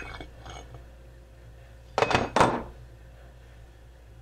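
Aluminum soft-plastic bait injection mold being opened by hand: a few faint metal clicks, then two sharp metal knocks about half a second apart around two seconds in as the mold halves come apart.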